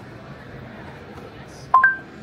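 A short rising two-note electronic chime from Google Assistant in the car's Android Auto system sounds near the end: a lower note, then a higher one. It marks the assistant taking in the spoken text-message command. Before it there is only quiet car-cabin background.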